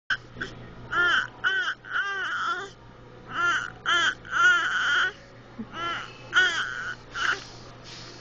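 A baby babbling in a string of short, high-pitched syllables, each rising and falling in pitch, in the rhythm of talk.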